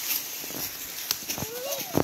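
Dry leaves and sticks rustling and clicking on a leaf-covered forest floor. Near the end a young child's high voice calls out, rising and falling.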